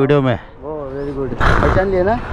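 Men talking, with a short, rough rush of noise about one and a half seconds in.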